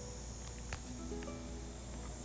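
A steady high drone of insects in summer woodland, with a few soft held notes of acoustic guitar music ringing over it.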